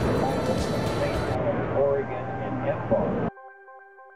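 Outdoor voices and chatter over background noise, cut off abruptly about three seconds in. Soft electronic music follows, a synthesizer playing a stepped melody of short, steady notes.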